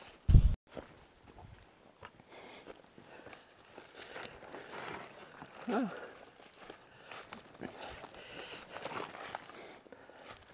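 Footsteps through dry fallen leaves on a forest trail, a scatter of rustles and crunches. A low thump comes about half a second in, and a brief gliding voice sound comes a little past halfway.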